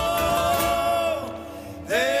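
Live Argentine folk music: a male singer with acoustic guitar accompaniment. He holds a long note that ends about a second in, and the next phrase begins near the end.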